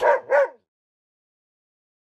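A dog barks twice in quick succession, "woof woof", the two barks about a third of a second apart.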